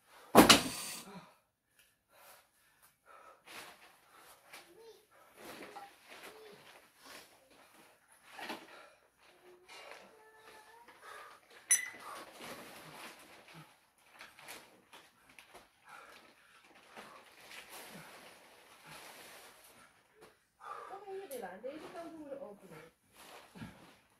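A heavy thump about half a second in as a 10 kg weight vest is dropped on the ground, followed by faint scattered rustling and movement. There is a short sharp click about twelve seconds in and a brief voice near the end.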